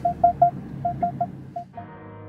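A run of short electronic beeps, all at one pitch, in an uneven rhythmic pattern of about eight notes. Near the end, sustained keyboard music comes in.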